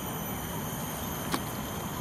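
Steady forest background of insects shrilling in several constant high tones over a low rumble, with one faint click about a second and a half in.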